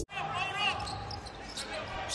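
A basketball being dribbled on a hardwood arena court during live play, over a faint hall ambience.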